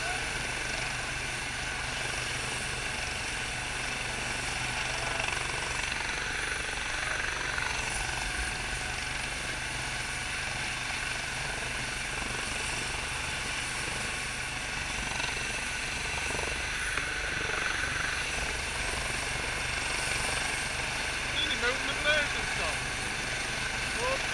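Air ambulance helicopter on the ground with its engines running: a steady whine over a low hum that holds level throughout.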